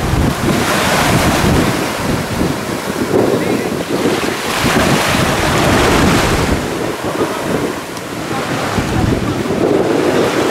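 Small waves breaking and washing up a sandy shore, a steady surf noise that swells and eases. Wind buffets the microphone throughout.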